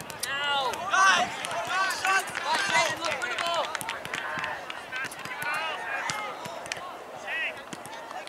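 Several voices of players and spectators shouting and calling out across a soccer field, overlapping and too far off to make out words, loudest about a second in. A few sharp knocks are scattered among them.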